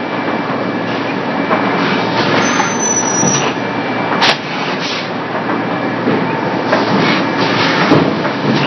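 In-line extrusion and thermoforming line for polypropylene flowerpots running: a steady mechanical din with scattered lighter knocks, and one sharp, loud clack a little over four seconds in.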